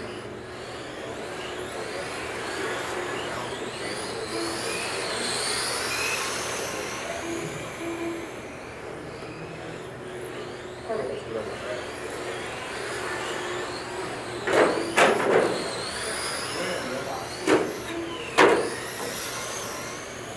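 Electric RC race cars on an indoor carpet track, their motors whining high and rising and falling in pitch as the cars accelerate and brake through the corners. Several sharp knocks in the second half, the loudest sounds, two close together and then two more.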